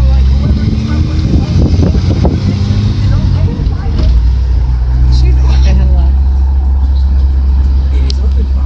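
Steady low drone of a car's engine and road noise while driving at a steady speed, with voices over it in the first few seconds.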